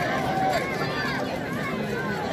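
Football spectators talking and calling out, many voices overlapping, with one voice holding a long call near the start.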